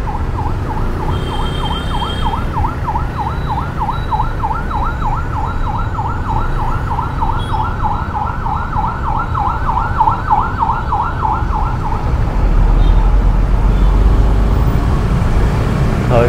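An emergency-vehicle siren in a fast yelp, its pitch sweeping up and down about four times a second, stops about twelve seconds in. A low rumble of traffic swells over the last few seconds.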